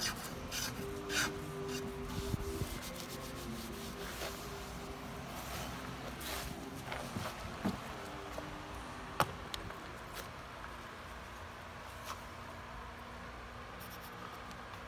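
A few scraping strokes of a hand edge tool cutting shavings from a wooden half-hull model, then light handling noises and clicks on the workbench, with one sharp click about nine seconds in.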